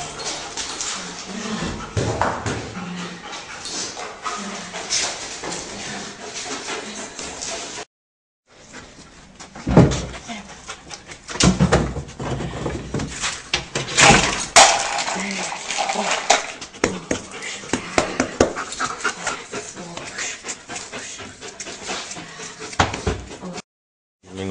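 A dog whimpering amid a run of knocks and scuffing thuds, with a person's voice in the background; the loudest knocks fall around the middle, and the sound drops out completely twice for a moment.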